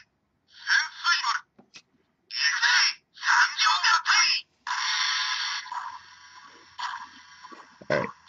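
A Transformers Go! combiner figure's electronic light-and-sound feature, triggered by holding the button at its waist, plays tinny, thin sound through the toy's small built-in speaker. There are several short recorded voice phrases, then, about halfway through, a longer steady sound effect that fades and dies away near the end.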